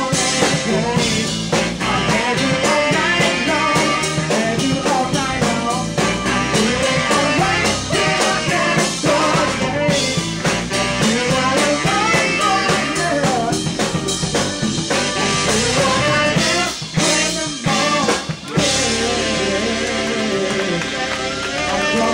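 A live brass-funk band: tenor and baritone saxophones playing, with bass guitar, drums and a lead vocal. Near the end the band stops short twice for a moment.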